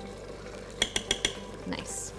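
Metal teaspoon scraping and clicking against the inside of a small glass jar of red curry paste: four quick sharp clicks about a second in, then a short scrape near the end.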